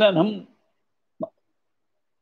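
The end of a man's spoken phrase in the first half second, then silence broken once, about a second in, by a single very short mouth sound such as a lip or tongue click.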